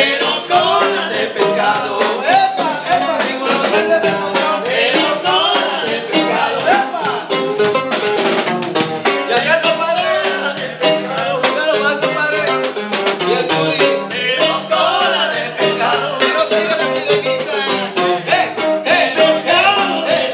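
Live Latin band music with male voices singing over bass guitar and drums, at a steady danceable beat.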